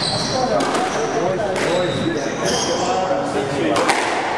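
A squash ball being hit in a rally, three sharp cracks off racquet and walls in the court, with short high squeaks of court shoes on the wooden floor, over the murmur of people talking nearby.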